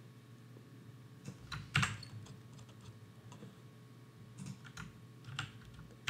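A few faint, scattered computer keyboard keystrokes during code editing, irregularly spaced, with the loudest pair of clicks a little under two seconds in.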